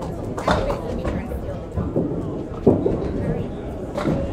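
Candlepin bowling-hall background: people talking and a steady low rumble of balls rolling on the wooden lanes, with a few sharp knocks.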